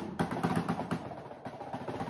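Snare drum played with sticks: a quick, even run of strokes, about five or six a second, growing softer toward the end.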